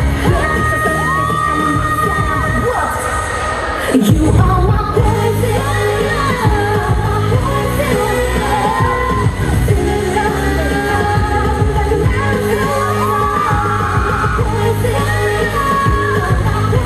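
K-pop dance track with female singing, played loudly over a hall's sound system. About four seconds in, a falling sweep ends in a hard hit and the music comes back in louder.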